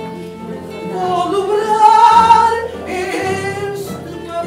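A woman singing fado with a wavering, sustained vocal line that swells loudest about halfway through, over a Portuguese guitar, classical guitars and bass guitar.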